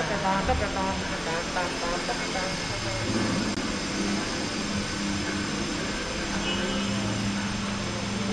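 Wheeled suitcases rolling over a hard, polished floor, a steady rumble under the hum of a large hall, with voices during the first couple of seconds.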